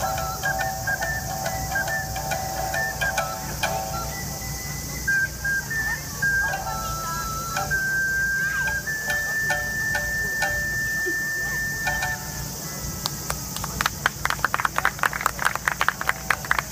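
Ocarina and shamisen playing a traditional Japanese melody together: clear, held ocarina notes over plucked shamisen notes, ending on one long high ocarina note. Clapping follows near the end.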